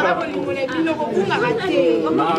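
Speech only: people talking, with voices overlapping in lively chatter.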